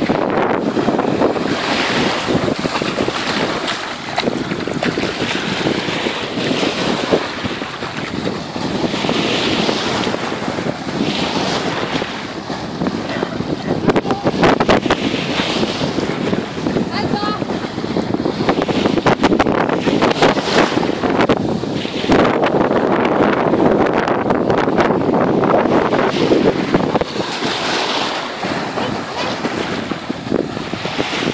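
Steady wind buffeting the microphone over the wash of small sea waves breaking on a sandy shore.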